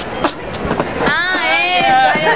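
Human beatboxing: sharp mouth-percussion strokes, then from about a second in a wavering, bending pitched vocal sound.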